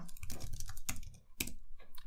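Typing on a computer keyboard: a quick run of key clicks with a brief pause a little past the middle.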